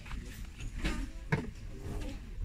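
Handling noise as a bar of soap on a small wooden sled is lifted off a shop shelf: a low rumble with two light knocks about one second and a second and a half in.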